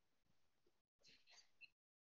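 Near silence: faint room tone over a video call.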